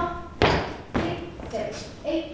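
Dancers' feet landing on a wooden studio floor during a rehearsal routine: sharp thumps at a steady dance rhythm, with voices between them.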